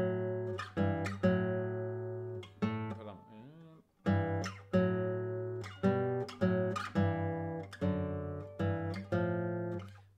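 Nylon-string classical guitar playing pairs of notes in parallel sixths, stepping along the G major scale, each pair plucked together and left to ring. A short phrase, a brief gap about four seconds in, then a longer phrase.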